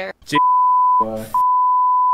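A censor bleep: a steady single-pitch tone laid over speech, starting about a third of a second in. It breaks off just after a second in for a short snatch of a man's voice, then comes back.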